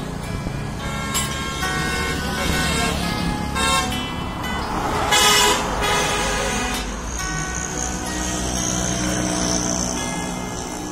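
Road traffic running past, with a vehicle horn honking twice, briefly about three and a half seconds in and louder at about five seconds, over background music.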